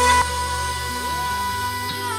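Music recorded playing at full volume through a portable Bluetooth speaker. A fraction of a second in, the level drops suddenly as playback switches from the louder JBL Charge 5 to the quieter Marshall Stockwell II.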